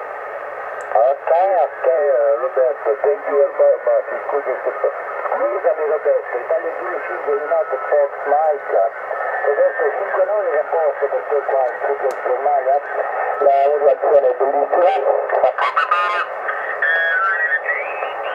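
Lower-sideband voice of another amateur station received on 40 metres through the Bitx40 kit transceiver's upgraded speaker: thin, narrow-band speech over a steady hiss. Near the end the tuning moves off frequency and the voice breaks into a garbled warble with a rising whistle.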